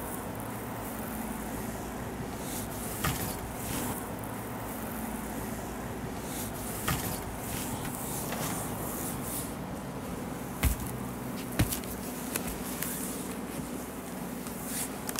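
Gel-slicked hands rubbing and sliding over a bare foot and calf in a leg massage: soft swishes of skin on skin coming and going, with a few short sharp taps, the loudest two about ten and eleven and a half seconds in.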